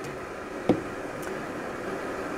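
An electric kettle's steady rushing hiss as the water heats toward the boil, with one short knock less than a second in as a jar is set down on the counter.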